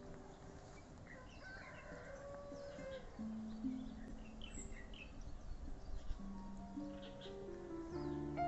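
Quiet instrumental music of slow held notes, with short bird chirps scattered through it.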